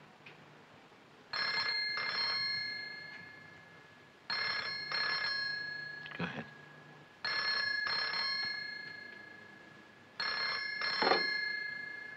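Landline telephone ringing in double rings, four times about three seconds apart, each ring fading away before the next.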